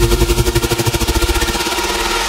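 Electronic dance music played over a club sound system: a fast, evenly pulsing roll of about a dozen hits a second over a held synth note, a build-up played off the decks.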